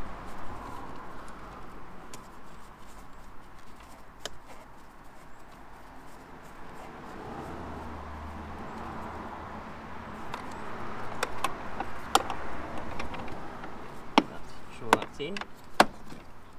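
Light knocks and clicks of gloved hands working on the intake parts and threading a bracket bolt by hand in a car's engine bay, with a few sharper clicks near the end. A low hum passes about halfway through.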